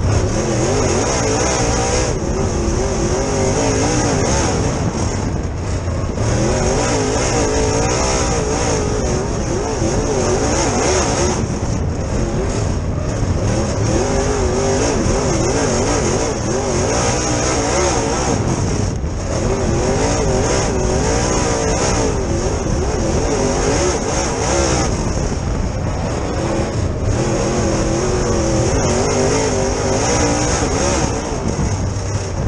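Super Late Model dirt race car's V8 engine at race pace, heard from inside the cockpit. Its pitch rises and falls in waves as it is worked through the laps, with brief drops every few seconds.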